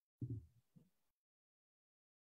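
Near silence, broken by two brief, soft low thumps near the start.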